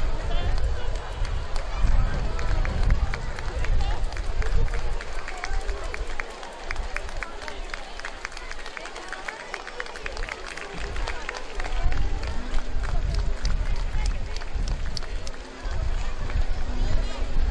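Gusty rumble on the microphone over choppy pool water, with a quick, dense patter of sharp ticks through the first half.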